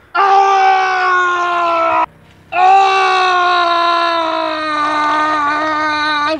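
A person screaming loudly: a high scream held for about two seconds, then after a short break a second, longer scream that slowly sinks in pitch.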